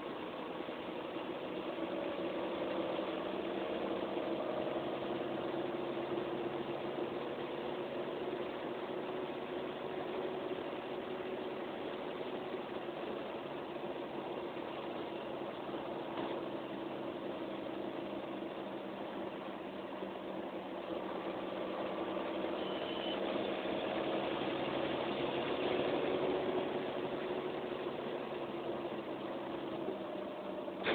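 Mercedes-Benz O405N single-deck bus's rear-mounted straight-six diesel engine running as the bus drives, heard from inside the passenger saloon. Its note drifts gently up and down, a little louder about three-quarters of the way through.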